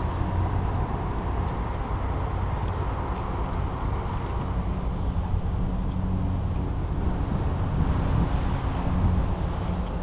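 Ford Transit-based camper van's engine running at low speed as it pulls into a parking space: a steady low rumble.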